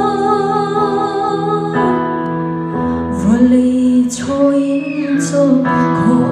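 A woman singing a Lai (Chin) gospel song into a microphone, holding a long note with vibrato before moving on to the next phrase, over sustained keyboard accompaniment.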